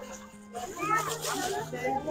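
Several children talking at once over background music with a steady low bass note that shifts pitch a couple of times.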